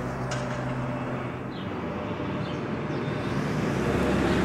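Steady low hum of a motor vehicle engine in road traffic. It eases slightly midway and builds again toward the end.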